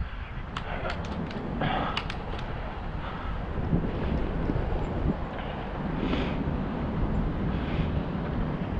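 Wind rumbling on the microphone of a camera riding on a moving bicycle, with a few sharp clicks and rattles in the first two or three seconds.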